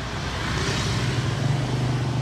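A motorbike passing close by in a street, its engine running with a steady low hum and rushing noise that swells about half a second in.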